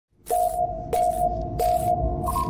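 Electronic intro sound effect: three evenly spaced pulses, about two-thirds of a second apart, each a steady ping-like tone with a burst of hiss, over a low rumble.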